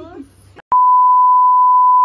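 A loud, steady 1 kHz test tone, the reference tone that goes with colour bars, starting suddenly with a click less than a second in and holding at one unchanging pitch.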